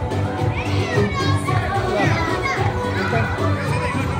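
Children's high-pitched shouts and chatter, loudest about one to three seconds in, over live band music with a steady bass line underneath.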